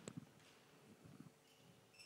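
Near silence: hall room tone with a click at the start and a few faint low thumps.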